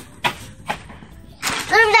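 A quiet moment with two brief knocks, then a young girl's high voice saying "dur" ("wait") near the end.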